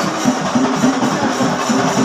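Singari melam: a group of chenda drums beating a fast, steady rhythm.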